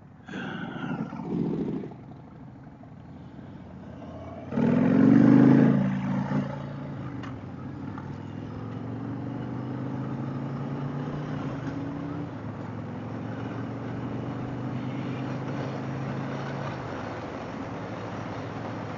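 Harley-Davidson Fat Boy's V-twin engine pulling away under throttle, loudest in a surge about five seconds in, then settling into steady cruising.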